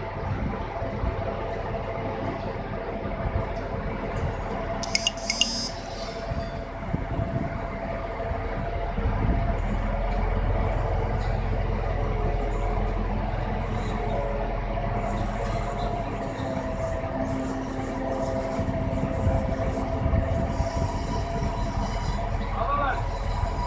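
Crane engine running steadily under load while it holds a suspended precast concrete column, with a brief metallic clatter about five seconds in.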